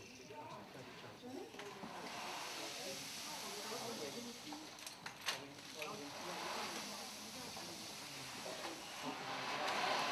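Quiet murmur of voices over a steady hiss that swells about two seconds in.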